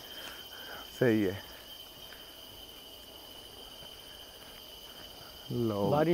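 Steady chorus of crickets, a constant high-pitched ringing that runs under a brief spoken word about a second in and talk starting again near the end.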